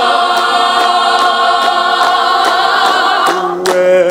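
Mixed a cappella gospel choir of men and women singing, holding one long full chord for about three seconds, then moving into shorter notes. Sharp hand claps keep time near the end.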